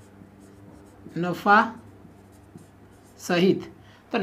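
Marker writing on a whiteboard, faint scratchy strokes. A man's voice breaks in twice with short utterances, about a second in and near the end, over a faint steady low hum.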